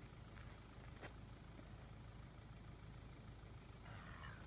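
Near silence: a faint steady low rumble of outdoor background, with a couple of faint clicks near the start and about a second in.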